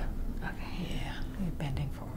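Soft, murmured speech, with short voiced sounds in the second half.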